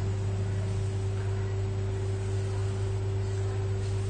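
A steady low electrical hum with a fainter, higher steady tone above it, holding constant throughout.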